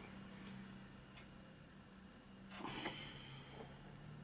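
Quiet room tone with a faint steady low hum, and a brief soft handling noise about two and a half seconds in as a glue bottle is run along the edge of a plastic model kit.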